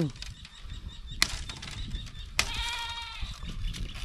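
Two sharp chops of a bolo knife striking green bamboo, about a second apart, followed by a short steady-pitched call.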